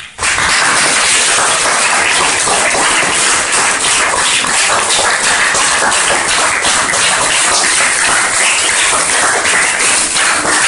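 Audience applauding, starting just as the last piano and voice chord dies away, then steady, dense clapping.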